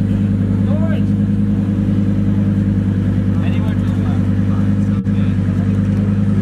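Lamborghini Huracán's V10 engine idling steadily at low revs, a deep even hum with no revving.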